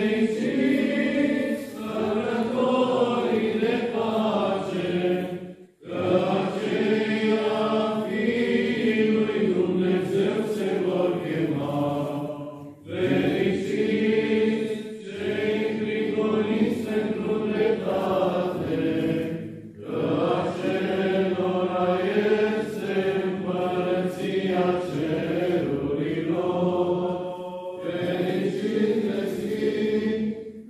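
Orthodox church chant sung by a choir in long, held phrases, with a brief break between phrases about every six or seven seconds.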